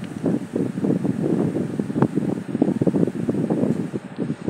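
Irregular low rumbling noise buffeting a handheld phone's microphone, with one sharp click about two seconds in.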